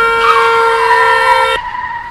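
A car horn sounding in one long steady blast that starts abruptly and cuts off after about a second and a half.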